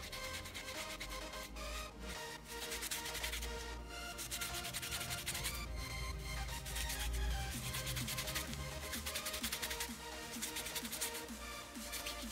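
Background music, over a cloth rubbing on an aluminium-foil ball in short strokes, wiping off excess polishing compound.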